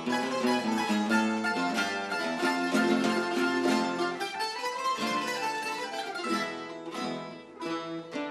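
An ensemble of Spanish guitars and smaller mandolin-like plucked instruments playing a lively instrumental passage of rapid plucked notes.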